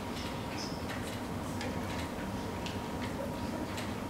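Conference-hall room tone with a faint steady tone and scattered faint, irregular small clicks, like desk and equipment handling among seated delegates.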